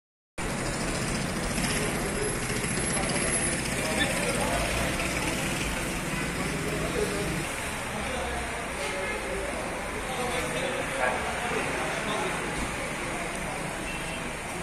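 Steady street traffic noise with the indistinct chatter of a crowd of people, a low vehicle rumble strongest in the first few seconds.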